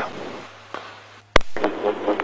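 Police two-way radio channel between transmissions: hiss that fades after one call ends, then a sharp key-up click about a second and a half in as the next transmission opens, followed by steady open-channel hiss. A low steady hum runs under it all.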